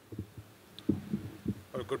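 A few soft, low thumps picked up by the podium microphone, then a man's voice begins near the end.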